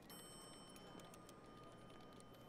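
Near silence: faint background ambience with scattered light clicks and a faint, steady high-pitched tone.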